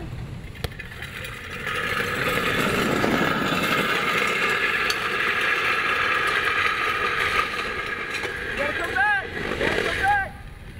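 Big-wheel trikes rolling fast down an asphalt street: a steady rolling roar of their wheels on the road that builds up about two seconds in. Voices shout near the end.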